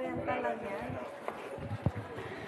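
Footsteps of hard-soled shoes knocking on a hard walkway floor at a walking pace, with one sharper knock near the end. Voices talk briefly at the start.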